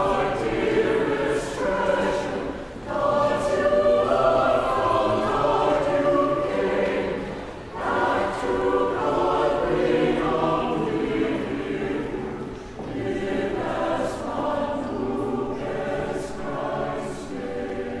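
Church choir singing in phrases, with short breaks about three and eight seconds in, growing softer toward the end.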